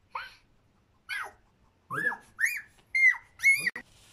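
A series of six short, high-pitched squealing calls, each rising and then falling in pitch, growing louder toward the end.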